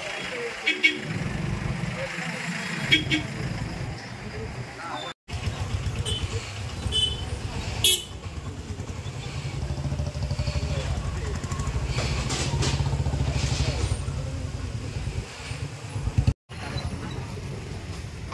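A lorry's engine running in a steady low rumble amid crowd voices, with a few short horn toots. The sound breaks off abruptly twice.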